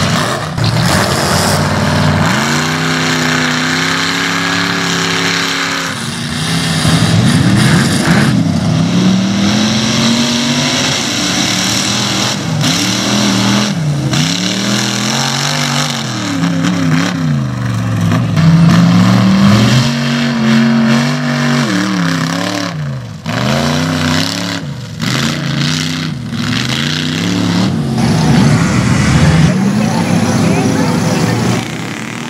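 Mud truck engine revving hard as it churns through a mud pit: a sustained high rev for a few seconds, then repeated surges of throttle, the pitch rising and falling every second or two.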